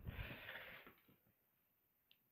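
A short, breathy huff close to the microphone with a low pop at its start, lasting under a second, then near quiet.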